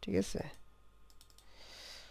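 A few quick clicks at the computer in the first half second, then faint room tone.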